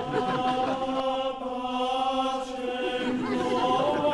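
A choir singing a slow chant in long held notes.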